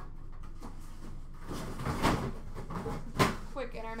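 Handling noises from card packaging at a counter: a rustle with a click about two seconds in, then a single sharp knock about a second later.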